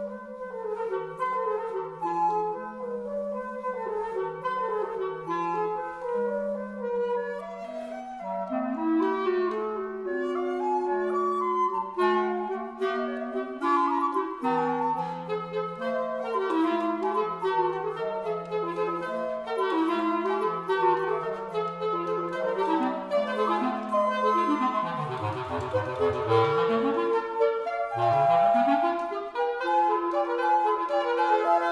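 Trio of period woodwinds (flute, clarinet and basset horn) playing a lively classical allegretto in interweaving parts, the basset horn carrying the low line beneath the other two. Near the end the low part sweeps down and back up in fast runs.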